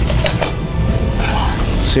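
Background music with a steady low bass, and a few light clinks of a metal frying pan and serving spoon being picked up, about a quarter second in and again near the end.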